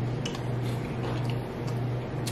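Wet mouth clicks and smacks of eating king crab and sucking butter sauce off the fingers, heard as scattered short clicks. Underneath runs a low hum that pulses steadily about twice a second.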